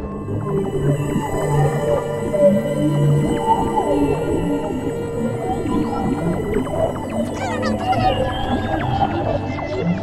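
Ambient film soundtrack of held steady tones over a low drone, layered with many whale-like gliding, wavering calls.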